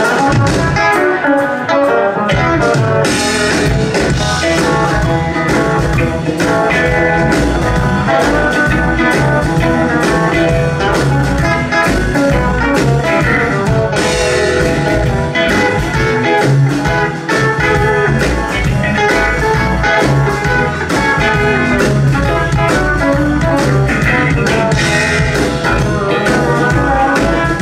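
Live blues-rock band starting a song with an instrumental passage: electric guitars over bass guitar and drum kit, played loud through the PA.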